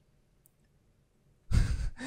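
Near silence, then about one and a half seconds in, a short breathy sigh close to the microphone.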